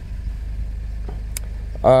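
Peugeot RCZ engine idling in Park, a steady low rumble heard from inside the cabin, running on a rebuilt fuel pump. A single light click comes shortly before a voice starts at the end.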